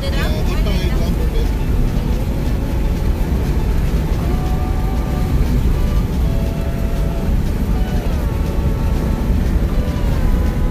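Car cruising on a highway: a steady low rumble of tyre and wind noise, with voices or held musical tones faintly over it from about four seconds in.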